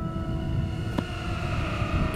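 Wind buffeting an outdoor microphone, a low fluttering rumble, with a faint steady drone under it and a single click about a second in.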